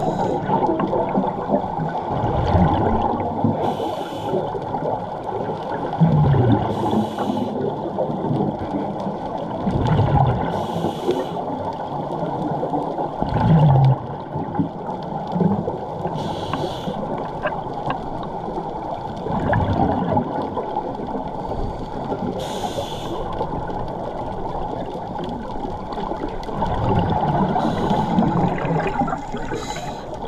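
Scuba diver breathing through a regulator underwater, heard over a dense, muffled rumble of water. The regulator gives a short hiss on each inhale every few seconds, and bubbles gurgle on the exhale.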